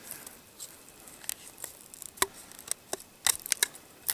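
Latex condom being stretched and worked over a Glock pistol's polymer grip by hand: scattered small clicks and snaps of rubber and plastic, with a quick run of them a little past three seconds in.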